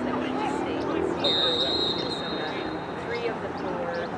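A referee's whistle blown once, a single steady high blast of about a second starting a little over a second in, over distant shouting from players and spectators.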